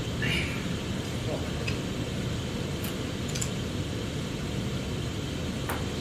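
Steady low room hum, like ventilation or an air-handling fan, with a brief faint voice sound near the start and a few faint clicks.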